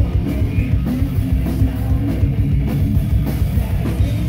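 Live rock band playing loud, with a full drum kit and guitars driving a steady beat.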